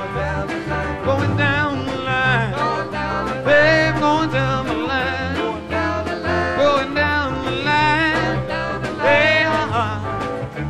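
Country-flavoured rock band playing live, an instrumental passage in which a lead guitar plays bending, sliding lines over bass and drums.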